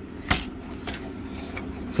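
Handling noise from a plastic HO-scale model locomotive kit and its box: one sharp click about a third of a second in, then a few faint ticks, over a steady low hum.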